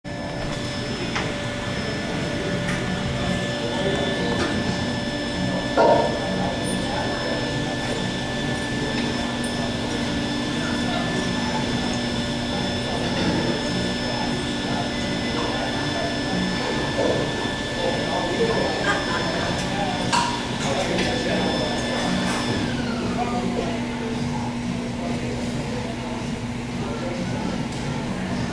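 Gym room sound: a steady machine hum and a high whine, with voices talking in the background. A single loud clank comes about six seconds in. The whine slides down and stops about three quarters of the way through.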